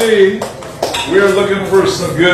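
A voice speaking in a room, with a couple of sharp clinks of dishes or cutlery, one at the start and one just under a second in.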